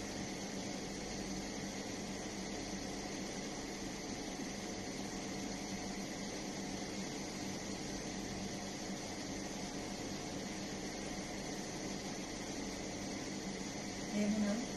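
Steady even hiss with a low hum underneath, unchanging throughout, with no distinct knocks or other events.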